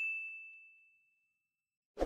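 Notification-bell sound effect from a subscribe-button animation: one clear high 'ding' fading out over about a second and a half, followed by a short click near the end.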